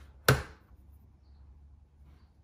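A single sharp knock about a third of a second in, followed by low steady room noise.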